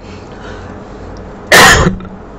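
A man coughs once into his hand, a single short, loud cough about one and a half seconds in.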